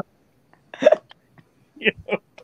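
A person's voice over a video call: one short vocal burst a little under a second in, then a quick 'yo' near the end, with silence between.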